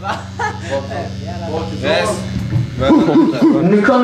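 A man speaking over the PA through a stage microphone, with a steady amplifier hum underneath. The hum cuts out about two and a half seconds in, and the band's instruments start coming in near the end.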